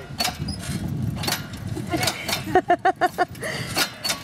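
Small four-wheeled rail draisine with metal wheels rolling along narrow-gauge track: a low rumble with scattered sharp clicks and knocks from wheels and rails.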